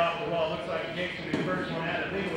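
A man's voice talking indistinctly; speech is the main sound.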